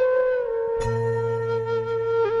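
Background film score: a slow flute melody on long held notes over a low sustained tone.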